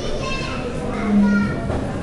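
Indistinct chatter of many voices, some of them high like children's, with a steady low hum that sounds briefly about a second in.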